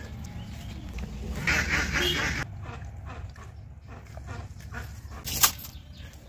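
An animal calling, with a single sharp click about five seconds in.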